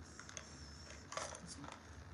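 Faint clicks and light rattles of thin paintbrushes being pulled out of a cardboard brush pot and handled, loudest about a second in.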